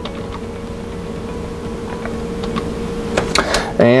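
A few faint computer-keyboard keystrokes as the last letters of a name are typed, over a steady electrical hum.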